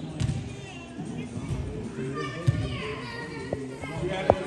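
Players' voices and calls during an indoor soccer game in a large arena, with a few sharp knocks of the ball being kicked in the second half.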